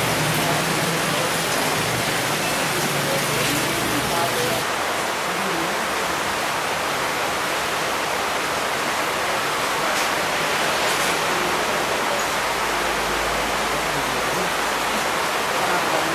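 A steady rushing noise with faint, indistinct voices underneath, typical of a group murmuring prayers together.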